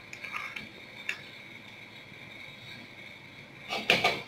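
Faint steady hiss of a pot of soup at the boil on a stove, with a few light clicks of a spoon against the pot and a louder knock just before the end.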